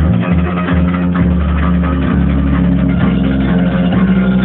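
Acoustic guitar and bass guitar playing together in an improvised jam: the guitar strums chords over held bass notes, and the bass shifts to a new note about halfway through.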